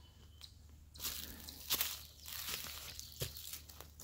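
Footsteps on dry fallen leaves: a few uneven crunching steps through leaf litter.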